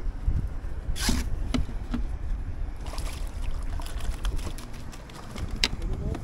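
Wind rumbling on the microphone and water against a kayak, with a few sharp clicks and splashes about a second in, around three seconds and just before the end.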